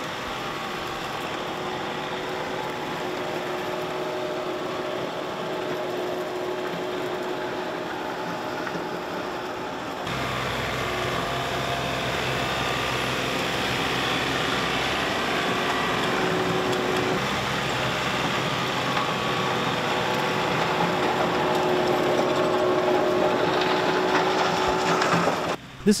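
John Deere 1025R compact tractor's three-cylinder diesel running a PTO-driven Tufline rotary tiller through garden soil: a steady engine and gearbox drone with the tines churning dirt. About ten seconds in the sound shifts, with more low rumble.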